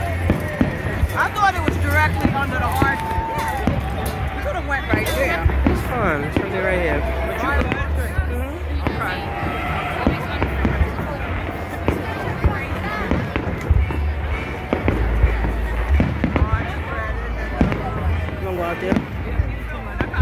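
Aerial fireworks shells bursting overhead in a string of booms and crackles, with a large crowd's voices going on underneath.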